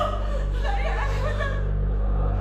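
A person laughing in chuckles over a steady low music bed, the laughter trailing off near the end.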